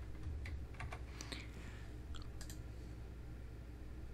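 A few faint keystrokes on a computer keyboard, scattered through the first two and a half seconds, over a steady low hum.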